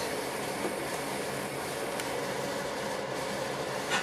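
Steady rushing noise of a lit gas stove burner under a pot, with a short click near the end.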